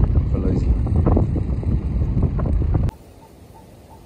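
Wind buffeting the microphone, a loud, irregular low rumble, which cuts off abruptly near the end to a much quieter, even hiss.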